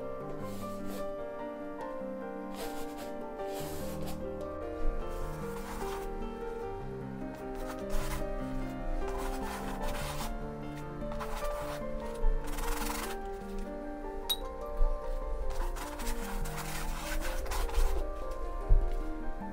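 Background music with slow held notes. Over it, a paintbrush scrubs paint onto a canvas in about nine short rubbing passes.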